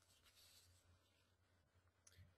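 Near silence: a pause in a recorded voice presentation.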